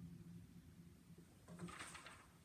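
Upright piano's final low note fading away to near silence. A faint rustle of paper starts about one and a half seconds in as the sheet music is handled on the music stand.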